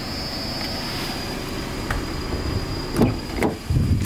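Front passenger door of a Nissan Sylphy being opened: two sharp clacks from the handle and latch near the end, then a low thump as the door swings open. A steady high insect drone runs underneath.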